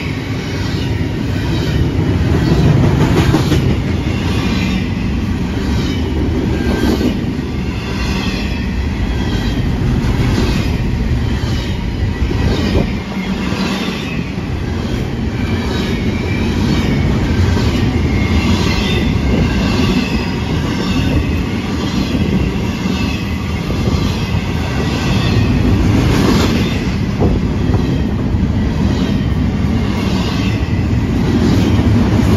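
Double-stack container train of well cars rolling past close by: a steady rumble of steel wheels on rail with repeated clacks as the wheels cross rail joints, and a wavering high squeal from the wheels.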